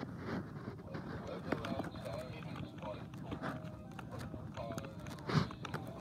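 Faint speech-like voices in the background, with scattered rustling and a couple of light knocks from hands working on a plush toy.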